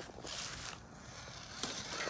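Faint scuffing and crunching of a small RC rock crawler's tyres working over rough concrete, with a brief hiss about half a second in.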